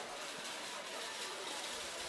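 Steady, even background noise of an outdoor setting, with no distinct sound standing out.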